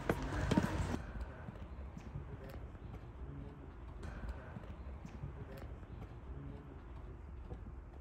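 Footsteps of hard-soled shoes on pavement: sharp clicks at walking pace over a low, steady street rumble.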